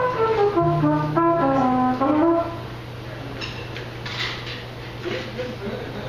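A jazz horn playing a quick run of notes that falls in pitch and turns up briefly at the end, with an upright bass note under it; the phrase stops about two and a half seconds in, leaving quieter room sounds and some voices.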